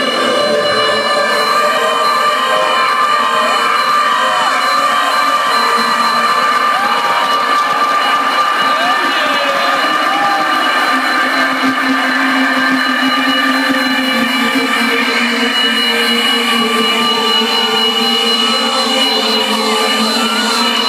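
Electronic dance music from a club sound system holding a long synth chord, recorded close and thin with almost no bass, while the crowd cheers and screams over it.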